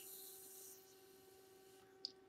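Near silence over a faint steady electrical hum, with a faint airy hiss in the first second as vapour is drawn through an e-cigarette's atomizer.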